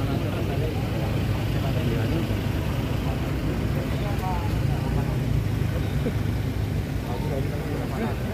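A car engine idling steadily close by, with scattered voices of a crowd over it.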